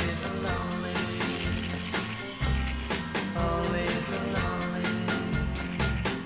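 Background music with a steady beat: an instrumental passage of a song with drums and bass.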